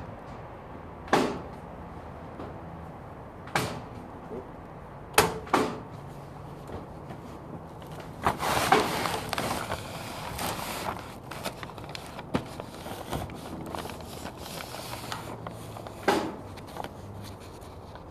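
Hands-on work on a tarp-covered dog pen: several sharp clacks a few seconds apart, and a few seconds of rustling and scraping about eight seconds in as boards and tarp are handled.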